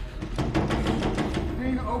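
TV drama soundtrack: a low, dark musical underscore and rumble with a few sharp knocks. A man's voice starts shouting near the end.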